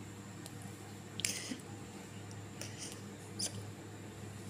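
Soft scuffing and scratching as a kitten grapples and bites at a bare foot, its claws and fur rubbing on the skin: a handful of short scratchy scuffs, the clearest about a second in and again near the end, over a low steady hum.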